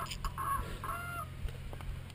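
Birds calling: a series of short, level-pitched calls, two of them close together in the middle.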